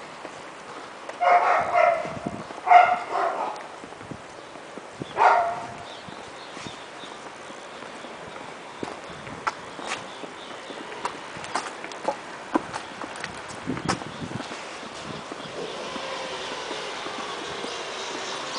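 A dog barking a few times in the first six seconds, with short, loud barks. Scattered faint taps follow over low street noise.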